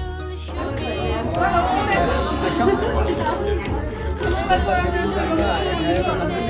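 Held notes of background music give way, about half a second in, to many people talking over one another in lively chatter.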